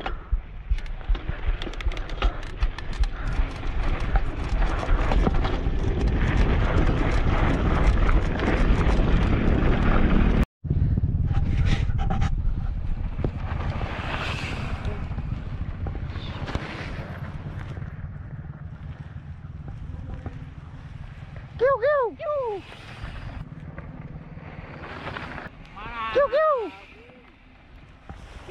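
Mountain bike rolling fast down a rough gravel trail, with wind buffeting the action camera and the bike clattering over the stones. After a cut about ten seconds in, riders roll past close by on gravel, with short shouts near the end.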